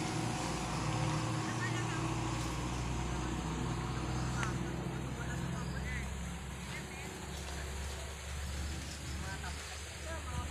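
A low motor rumble runs steadily and shifts slightly in pitch, growing somewhat quieter in the second half. Faint voices sound in the background.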